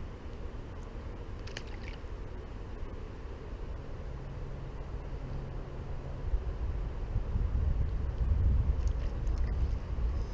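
Low rumble of wind buffeting the microphone, growing stronger in the second half, with one brief click about a second and a half in.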